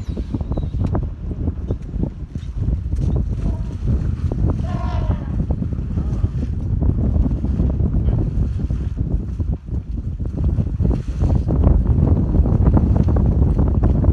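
Wind buffeting the microphone: a loud, gusty low rumble that swells toward the end. A brief voice is heard about five seconds in.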